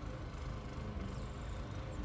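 Quiet outdoor background: a steady low rumble with no distinct events.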